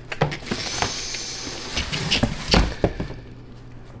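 A cardboard shoebox being opened and tissue paper rustling as shoes are unpacked, with a run of small knocks and crinkles from the handling. The loudest is a thump about two and a half seconds in.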